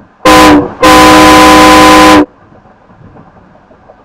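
Toyota Sienna minivan's horn honked twice, heard from inside the cabin: a short beep, then a steady, very loud blast of about a second and a half that cuts off sharply. Low road noise continues under and after it.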